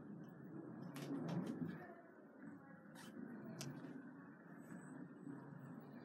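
Faint rolling of Segway-Ninebot Drift shoes' small wheels on a hardwood floor, a low rumble that swells briefly about a second in, with a few light clicks.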